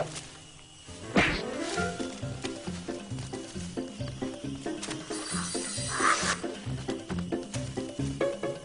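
A tiger call about a second in, sudden and falling in pitch, over background music with a steady rhythmic beat of pitched notes. A harsher, noisier burst comes a little before six seconds.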